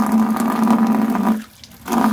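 Water running from an outdoor tap and splashing as it is scooped up and thrown onto a face, with a steady low hum under the rush; it cuts off about one and a half seconds in.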